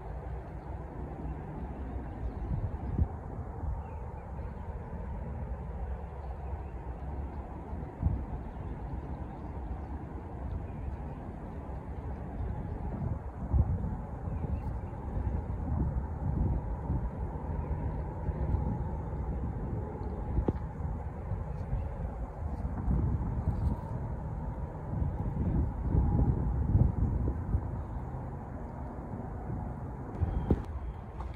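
Outdoor ambience: a steady low rush with uneven gusts of wind buffeting the microphone, swelling now and then and strongest near the middle and near the end.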